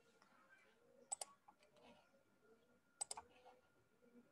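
Near silence with faint room tone and a faint steady high tone. Two quick double clicks stand out, about a second in and again near three seconds.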